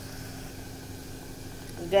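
A steady low mechanical hum with a faint constant tone and no other event, until a woman's voice starts right at the end.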